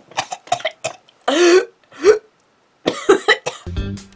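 A woman coughing and making short strained vocal noises, the loudest a burst about a second and a half in, then a brief pause before more short sounds.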